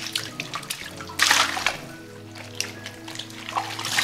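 Tap water running into a sink while salted napa cabbage halves are swished and shaken up and down in the water to rinse out the brine, with splashing that is loudest about a second in.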